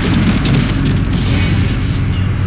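Heavy band music at full volume: a dense wall of distorted guitar with drums hitting repeatedly over it.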